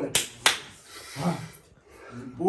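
Two sharp hand strikes, a quick pair of claps or snaps about a third of a second apart, followed about a second later by a brief, faint voice.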